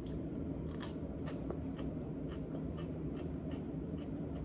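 Raw radish being chewed: a run of crisp crunches, about three a second.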